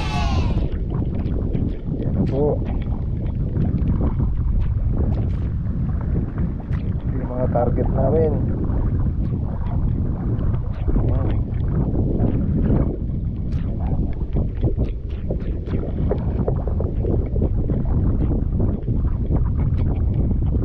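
Steady low wind rumble buffeting the microphone out on choppy open water, with scattered small ticks and splashes and a few brief faint voice sounds.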